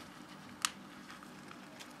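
A single sharp click from a thin plastic cup crackling in a hand, a little past half a second in, over quiet room background.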